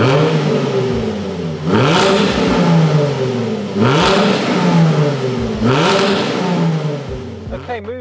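Jaguar F-Type's 3.0-litre supercharged V6 revved through its active sports exhaust, three blips of the throttle about two seconds apart, the pitch climbing to each peak and falling away again. The engine settles back towards idle near the end.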